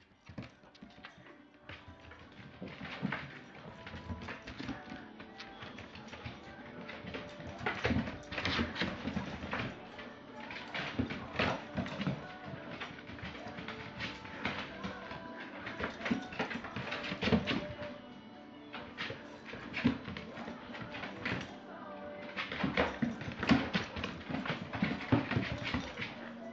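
Background music, with a corgi's claws clicking and scrabbling irregularly on a hardwood floor as it chases a laser dot, and a dog's voice now and then.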